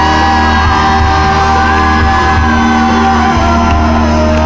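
Loud live rock music: a singer holds long notes over a steady bass, with shouts from the crowd.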